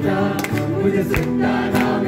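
Amateur live song: an acoustic guitar strummed while several voices sing together into microphones through a PA.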